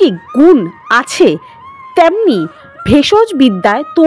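A voice speaking in short, quickly changing syllables, over a faint steady background music tone.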